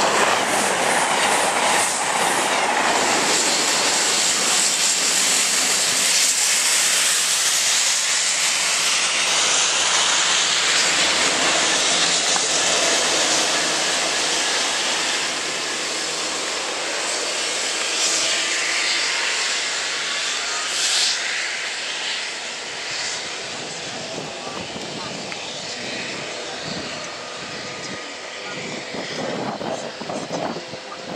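A Class 221 Super Voyager diesel train rushes past at speed alongside a rail head treatment train worked by Class 66 diesel locomotives, whose water jets hiss onto the rails. The loud rush of noise eases off over the last third as the rear locomotive draws away.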